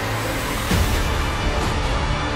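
Dramatic film-trailer score mixed with a dense layer of low rumbling, hissing sound effects, swelling louder a little under a second in.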